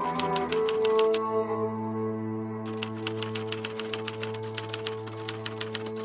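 Typewriter key-click sound effect, a rapid run of clicks about six a second that pauses for a second and a half near the start, over slow background music with held chords.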